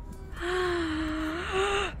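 A woman's long, breathy "ooh" of amazement, held on one pitch for about a second and a half and lifting near the end.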